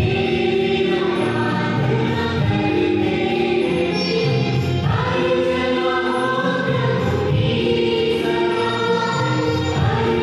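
Church choir singing a hymn with instrumental accompaniment, steady and continuous.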